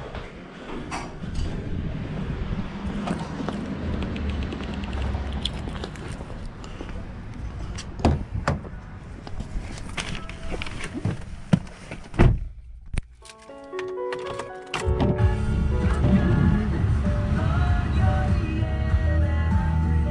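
Steady outdoor noise with scattered knocks, then a car door shuts about twelve seconds in. After a brief hush, music starts from the 2016 Hyundai Sonata's car radio, heard inside the cabin.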